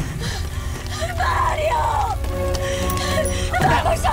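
Dramatic film soundtrack in a fire scene: music with held notes over a steady low rumble of burning fire, broken by short shouted cries about a second in and again near the end.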